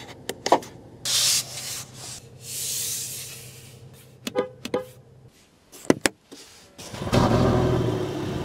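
Clicks of a car's power-window switch, then the electric window motor humming steadily for about four seconds with a hiss of the glass rubbing in its seal. A few sharp button clicks follow, and near the end the Land Rover Defender's turbocharged straight-six engine comes in loudly, running.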